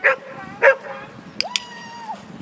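Dog barking twice in quick succession, followed by a steady, high-pitched held note lasting about half a second.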